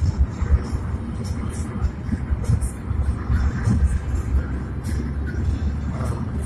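Road noise inside a moving car's cabin: a steady low rumble of engine and tyres.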